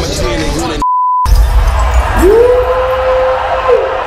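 Rap music breaks off into a short, pure beep over silence, like a censor bleep. It is followed by the noise of a large outdoor crowd, over which a single tone rises in pitch and holds for about a second and a half before falling away near the end.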